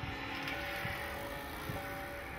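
Church bells ringing, their long steady tones overlapping, with low rumbles and soft thumps from wind on the microphone and people walking.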